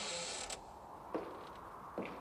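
A steady hiss cuts off suddenly about half a second in. Then comes a creaking sound, with two short knocks about a second apart.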